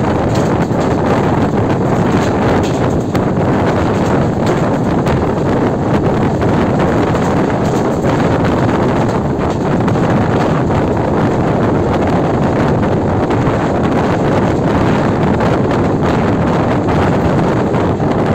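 Loud, steady wind noise on a microphone held outside the window of a moving passenger train, over the constant running rumble of the coach on the track.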